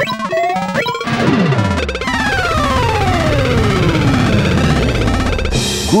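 Cartoon sound effects over music: quick rising swoops at first, then a long falling whistle-like glide over a loud jumble of low rumbling noise. This is a comic crash-and-fall effect, and it cuts off near the end.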